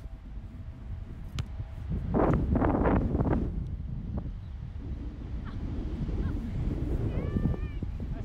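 Wind buffeting the microphone on an open field, strongest about two to three seconds in. A single sharp knock comes about a second and a half in, a soccer ball being kicked in a passing drill. A bird chirps briefly near the end.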